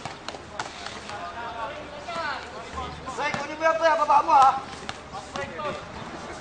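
Players and onlookers calling out on a basketball court, loudest a few seconds in, with several sharp knocks of a basketball bouncing on the hard court.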